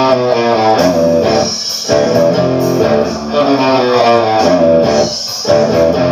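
Electric guitar playing quick picked runs of single notes, with short breaks between phrases, over the song's recording.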